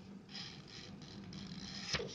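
Faint rustling and scraping of paper sheets being handled as a page of notes is moved aside, with a brief click near the end.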